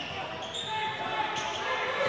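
Basketball being dribbled on a hardwood court, the bounces echoing in a large, mostly empty gym.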